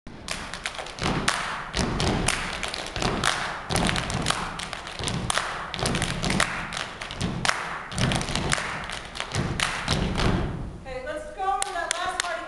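A group of performers stomping and clapping on a stage: a quick, uneven run of sharp thuds and slaps, a few a second, which gives way to voices near the end.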